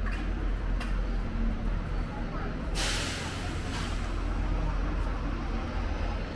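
City street ambience: passers-by talking over a steady low traffic rumble, with a short, loud hiss about halfway through and a fainter one a second later.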